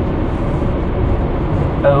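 Steady low rumble of a freight train coming close.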